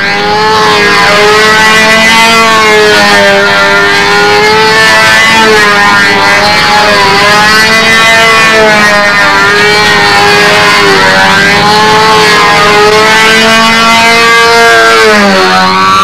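Radio-controlled model airplane's engine running in flight: one steady buzzing note that rises and falls in pitch as the plane passes and maneuvers.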